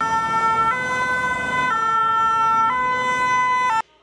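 French two-tone emergency-vehicle siren (the 'pin-pon' sound) alternating between a lower and a higher note about once a second, then cutting off suddenly near the end.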